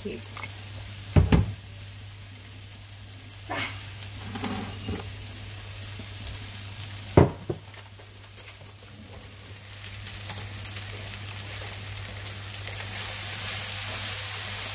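Sliced leeks, diced potato and onion sizzling as they fry in oil and butter in a frying pan, stirred with a spatula; the sizzle grows louder near the end. Two loud knocks, about a second in and about seven seconds in, stand out over a steady low hum.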